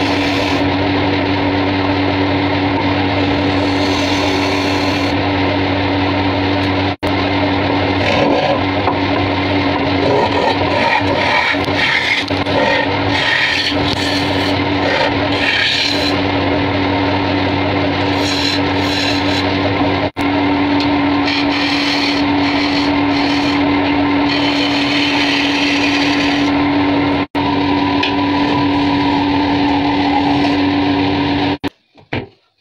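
Wood lathe running with a steady hum while a hooked hollowing tool cuts into the end grain of the spinning wood blank, giving a continuous scraping, shaving sound. The sound breaks off for an instant three times.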